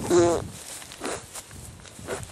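Footsteps swishing through long grass as people walk carefully single file, with a short vocal exclamation just at the start, the loudest sound here.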